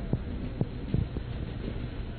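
Low running rumble of a JR East 209 series electric train moving slowly from a station, heard inside the driver's cab. Its wheels give irregular clunks, four or five a second, as they cross rail joints and points.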